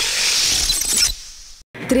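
A glassy, shatter-like sound effect ends a TV channel's animated logo intro, fading away after about a second. A voice-over starts just before the end.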